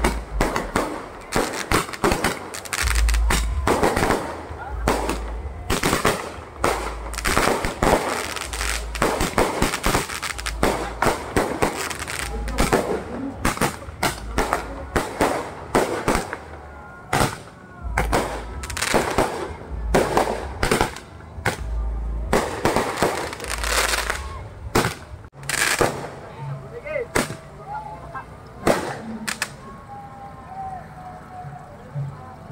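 Fireworks going off in an irregular string of sharp bangs and pops, including a handheld roman-candle tube firing shots into the sky, over music with a heavy bass beat.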